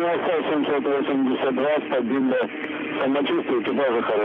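Speech over a narrow-band radio link: launch-control voice calls during the rocket's flight, with no sound other than speech.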